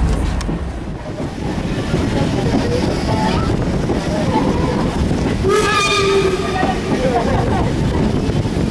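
Steam-hauled passenger train running, heard from inside the coach: a steady low rumble of wheels on rail, with one short blast of the locomotive's steam whistle about five and a half seconds in.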